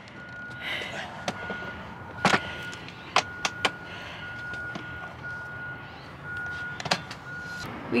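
Nuna infant car seat being set and latched onto its base in a truck's back seat: a series of sharp clicks and knocks, the loudest a little over two seconds in. Under them a steady high electronic tone from the truck sounds with short breaks until near the end.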